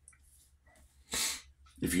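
A man drawing one short, sharp breath about a second in.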